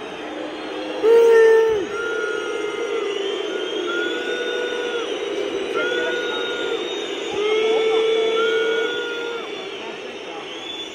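Football crowd in the stands singing a chant together in long held notes, one pitch stepping to the next over the stadium's steady noise. It swells loudest about a second in and again near the end.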